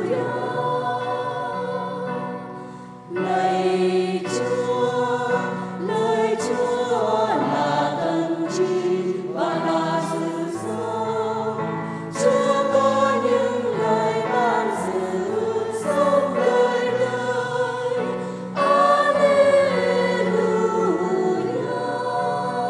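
Church choir singing the Gospel acclamation at Mass over sustained low accompaniment, in phrases with brief breaks about 3, 12 and 18 seconds in.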